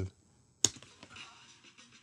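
A single sharp click of a laptop key about two-thirds of a second in, followed by faint room noise.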